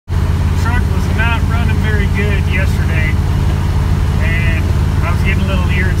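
Cabin drone of a wood-gas-fuelled pickup truck driven at highway speed, heavily loaded: a loud, steady low engine and road noise. A man's voice talks over it in two stretches.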